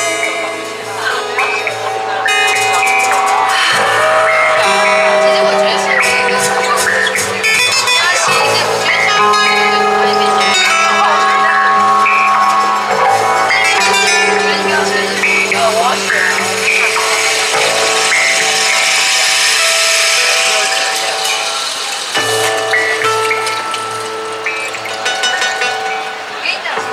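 Live band playing a slow song: sustained chords and a singing voice over light percussion ticks, with a rainstick's trickling, rain-like rush swelling in the latter half.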